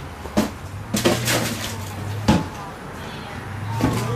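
Short, sharp knocks over a steady low hum, the loudest a little past halfway; among them is a cricket bat striking the ball for a single. Brief voices come and go.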